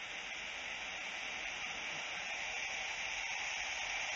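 Steady hiss and static of an open phone line on air with the caller saying nothing.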